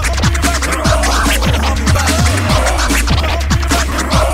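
DJ mix music with a fast, heavy bass beat of falling low thumps and turntable scratching over it.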